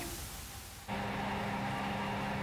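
A brief quiet gap, then, starting suddenly just under a second in, the steady hum of heavy open-pit mining machinery: a large excavator loading a BelAZ haul truck with rock, several steady tones over a low rumble.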